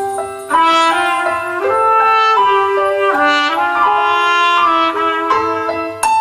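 Live trumpet and saxophone duet playing a melody of held notes over a Yamaha CP stage piano, the trumpet leading, with a brief breath pause just after the start.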